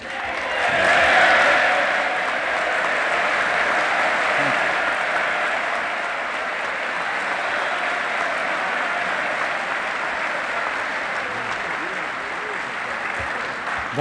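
A large audience applauding. The applause swells in the first second or so, then holds steady.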